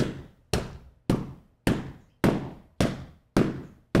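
A steady series of about eight evenly spaced knocks or thuds, a little under two a second, each hit dying away quickly.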